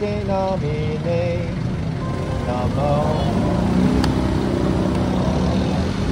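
Busy city-street traffic at an intersection: motorcycle and car engines running and pulling away, with one engine's hum rising slightly in the second half and a sharp click about four seconds in.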